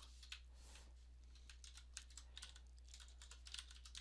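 Faint typing on a computer keyboard: scattered key clicks that come quicker near the end, over a steady low hum.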